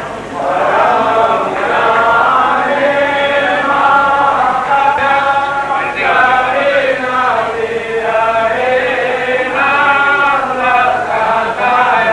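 A group of voices singing a devotional chant together in a continuous flowing melody with long held notes.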